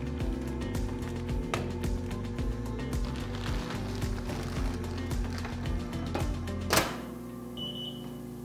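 Background music over the crinkling of a plastic sterilization liner bag being handled, then the sterilizer's stainless steel door shutting with a single loud clunk near the end, followed by a short electronic beep.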